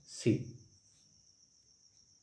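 A man says one short word, then a faint, steady high-pitched tone carries on alone.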